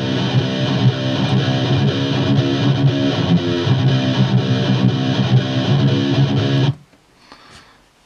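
Recorded heavy rhythm guitar from an ESP EC1000 with EMG active pickups, played back through 5150 amp simulations: a warmer, thicker distorted metal tone. The playing stops abruptly near the end.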